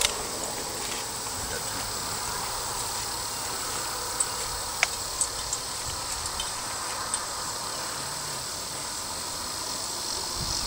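A steady high-pitched drone of summer insects. A few short sharp clicks come in the middle.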